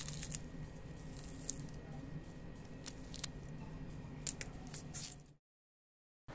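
Kitchen knife cutting through raw jackfruit: a few faint sharp clicks and cuts over a steady low hum, stopping dead about five seconds in.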